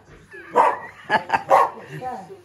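A small dog barking about four times in quick succession.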